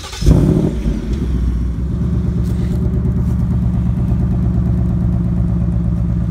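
Ford Mustang GT's 5.0-litre V8 firing up with a loud flare just after the start, then settling into a steady idle.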